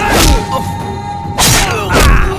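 Two hard punch sound effects in a film fight, one just after the start and one about a second and a half in, over background score music with a held tone.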